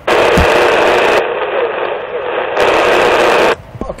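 CB radio speaker hissing with loud static while another station transmits, a voice barely showing under the noise. It fits what the operator later calls a strong carrier with next to no audio. The hiss cuts off suddenly about three and a half seconds in as the transmission ends.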